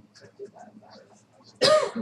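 A person sneezes once, a short, loud burst about one and a half seconds in.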